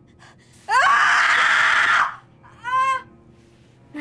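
A teenage girl screaming in pain as she is burned: one loud scream of about a second and a half that starts with a rising pitch, then a short second cry.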